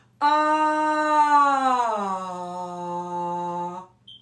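A woman singing a sustained 'ah', held on one pitch, then gliding smoothly down about two seconds in and held on the lower note until it stops near the end. It is a vocal-range exercise: starting mid-range and changing tone to drive the voice lower.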